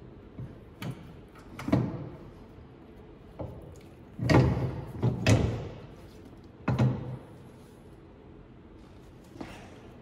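A run of metal clunks and knocks as a winch is shifted and set down onto its steel mounting plate inside the front bumper frame, the loudest two about four and five seconds in, each ringing briefly.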